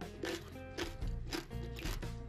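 Someone chewing crunchy cucumber kimchi: four crisp crunches about half a second apart, over soft background music.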